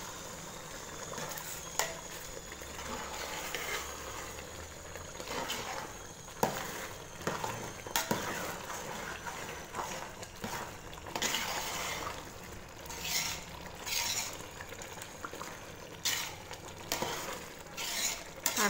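A metal ladle stirring rice through boiling spiced water in a cooking pot. It scrapes repeatedly and clicks now and then against the pot over a steady bubbling hiss.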